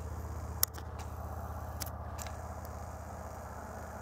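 A low, steady engine hum with a faint regular pulse, broken by a few sharp clicks, the loudest about half a second in.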